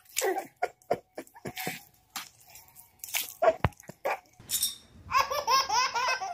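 A baby laughing in rapid, repeated giggling bursts from about five seconds in, after a few seconds of scattered short sounds.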